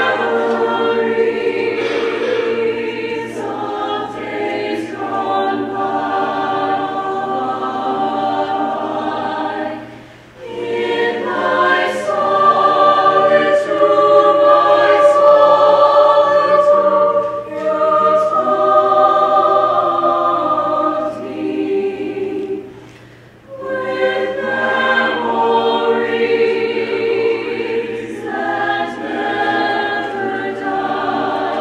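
Mixed-voice choir singing sustained chords in long phrases, with two short breaks between phrases, about a third of the way in and again past two-thirds.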